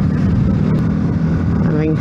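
Yamaha MT-125's single-cylinder four-stroke engine running steadily while riding: a low, even hum under a rushing road and wind noise.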